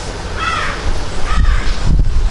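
A crow cawing twice, two short harsh calls about a second apart.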